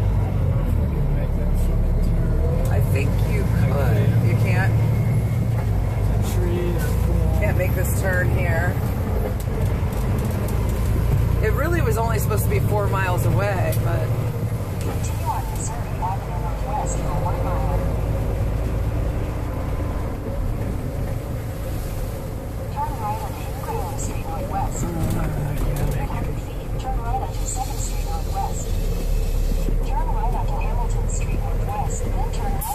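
Steady low rumble of a semi truck's engine and road noise inside the cab, with indistinct voices coming and going.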